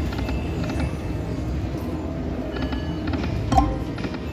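Rich Rich Chocolate Respins video slot machine spinning its reels, with short electronic chimes and clicks as the reels land, over a steady casino-floor din. A single louder knock comes about three and a half seconds in.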